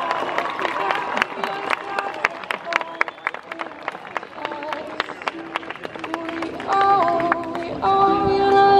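Ukulele plucked and strummed, with a young woman singing into a microphone; her held, stepped notes come through clearly near the end.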